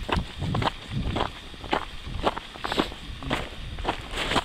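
Footsteps crunching on a thin layer of snow over a leaf-strewn trail, about two steps a second, with a low rumble of wind or handling on the camera microphone.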